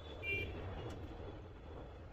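Low, steady road rumble of a moving car heard from inside the cabin, with a brief faint high-pitched beep about a third of a second in.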